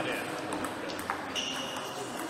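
A few sharp clicks of a table-tennis ball tapping between points, then a held high-pitched squeak starting about one and a half seconds in, over background voices in a sports hall.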